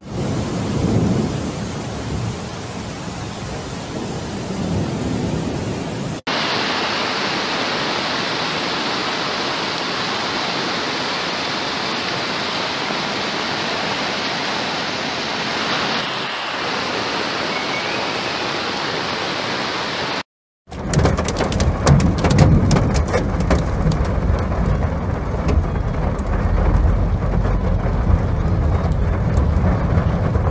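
Heavy rain and floodwater: a steady hiss through a series of short clips. In the last ten seconds, rain patters sharply on a car window over a louder deep rumble.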